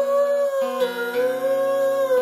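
A man humming one long, slowly wavering note over a strummed acoustic guitar, with a new chord struck a little past halfway.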